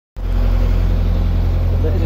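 Narrowboat's inboard engine running steadily under way, a low, even drone.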